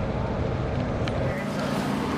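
Steady low rumble of city street noise in an open square, with faint voices in the background.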